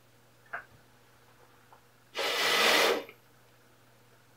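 A strong puff of breath blown onto a small plastic propeller on a DC motor, lasting just under a second, about two seconds in. A short click comes about half a second in.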